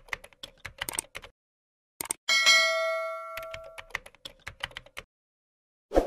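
End-screen animation sound effects: quick runs of keyboard-typing clicks as on-screen text is typed out, with a single bell-like ding about two and a half seconds in that rings for over a second while the clicking goes on.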